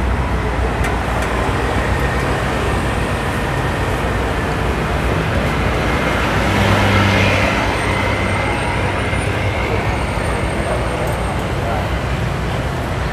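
Steady street traffic noise, with a motor vehicle passing more loudly about six to eight seconds in.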